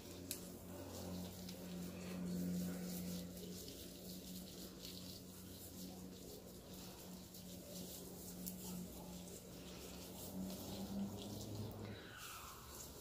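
Faint wet squishing and crackling of fingers working a creamy hair mask through wet, product-coated hair, over a steady low hum.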